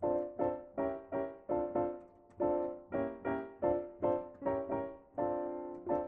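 Yamaha digital piano played with both hands in block chords, alternating between chord positions of the F sixth-diminished scale. The chords come about two or three a second, each fading before the next, and the last is held longer.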